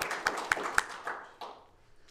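Hands clapping in applause, which thins out about a second in and fades away by about a second and a half.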